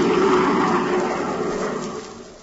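Roaring rocket-ship sound effect from a 1950s radio drama, a steady rush of noise that dies away toward the end.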